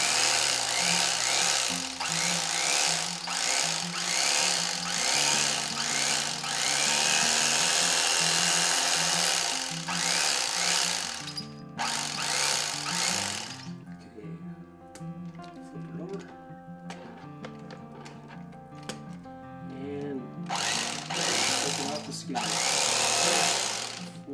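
Electric fillet knife running as its reciprocating serrated blades cut through a lake perch, a steady motor buzz. It stops a little before halfway and runs again briefly near the end.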